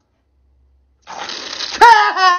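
A noisy inhale through two drinking straws in the nostrils, sucking orange drink up them, starting about a second in. Just before the end it breaks into a loud, wavering yell, the loudest sound.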